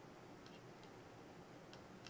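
Near silence: room tone with three faint, irregular clicks.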